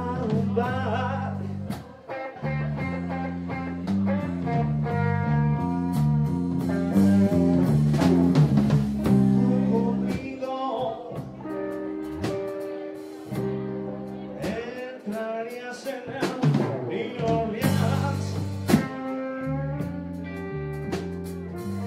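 Live band performing a song: a male singer over an electric bass line and a drum kit. The bass drops out for a moment about halfway through and again a few seconds later, leaving voice and drums.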